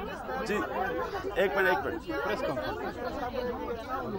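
Several people talking over one another, their voices overlapping into indistinct chatter.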